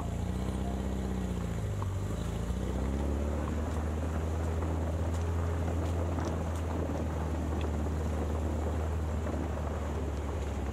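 Engine of a small vehicle driving slowly along a dirt track. Its note falls and rises again in the first two or three seconds, then holds steady.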